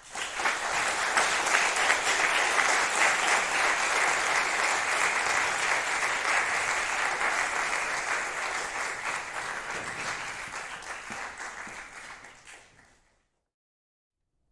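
Audience applauding, starting suddenly and dying away near the end.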